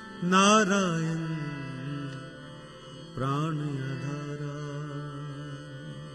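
Gurbani kirtan: a male voice sings over a steady harmonium drone. A loud sung phrase enters near the start and another about three seconds in, each fading back to the held harmonium tones.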